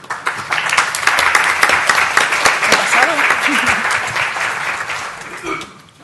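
Audience applauding: many hands clapping, swelling within the first second and dying away near the end.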